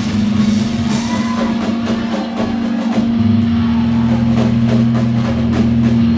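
Heavy punk band playing live: distorted guitar and bass hold low sustained notes over a drum kit. The drums settle into a steady, driving beat about halfway through.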